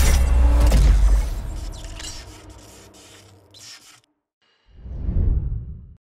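Logo sting sound effect: a deep boom with a rushing, crackling whoosh that fades away over about three seconds, cuts to silence, then a second low swell rises and fades out near the end.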